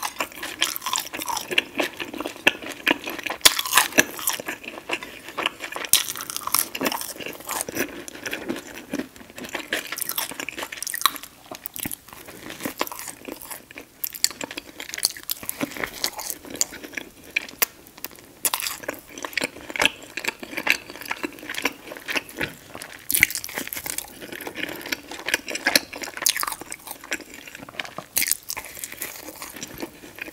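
Close-miked eating: biting and chewing crunchy fried chicken and buttered toast, with many small irregular crunches and wet mouth clicks.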